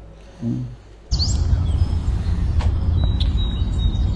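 Cartoon outdoor-ambience track: birds chirping over a steady low rumble, starting suddenly about a second in, with a quick rising chirp as it begins and a thin high note from about three seconds in.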